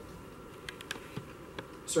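Steady faint hum of room tone with a few soft, scattered clicks in the middle.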